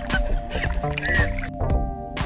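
Electronic background music with a steady beat of about two strokes a second. Over its first second and a half there is splashing water and a short high squeal of a woman's laughter, which cut off suddenly.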